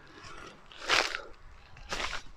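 A footstep crunching on dry leaf litter about a second in, with a lighter step near the end.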